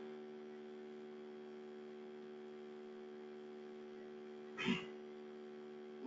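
Steady low electrical hum on the recording line, with one short faint sound about four and a half seconds in.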